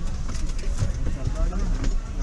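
Indistinct voices over a steady low car-engine rumble inside the car's cabin, with a couple of light knocks.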